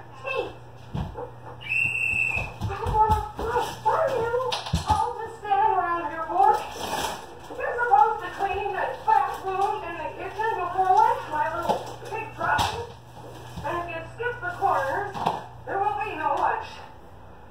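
Off-camera voices talking, too indistinct for any words to be made out, with a few dull thumps.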